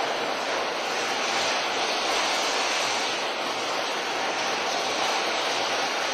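Steady, even rushing noise with no distinct knocks, tones or rhythm.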